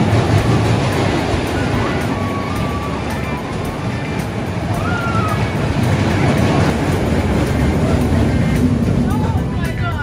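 Small family roller coaster train running along its steel track with a steady rumble, with voices and music over it.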